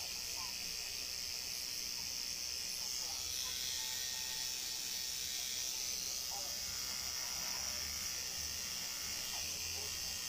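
Electric tattoo machine running steadily as it works on skin, heard as a low buzz under an even hiss.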